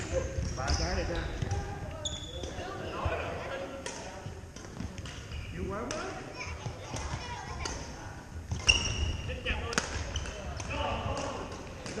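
Badminton play in a large gym: scattered sharp racket-on-shuttlecock hits and short high sneaker squeaks on the wooden floor, with voices from players across the hall and an echoing room sound.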